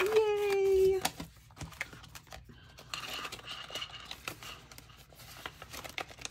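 A woman's voice holds one note for about a second, then paper bills and a clear plastic cash envelope are handled, with faint rustling and small clicks.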